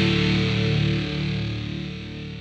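The final distorted electric guitar chord of an alternative rock track, with bass, ringing out and fading away.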